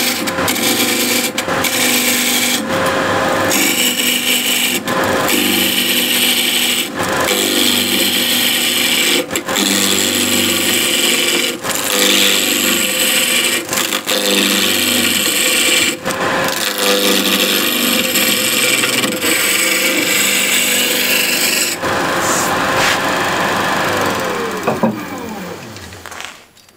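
Wood lathe roughing a square blank down to a cylinder with a one-inch skew chisel: a loud, continuous rough cutting of steel on spinning wood over the motor's steady hum, broken by short gaps as the tool lifts off. Near the end the cutting stops and the lathe motor winds down, its hum falling in pitch.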